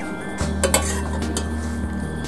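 A metal ladle clinking and scraping against a stainless steel pot and bowls as soup is served out, with a few sharp clinks about half a second to a second and a half in.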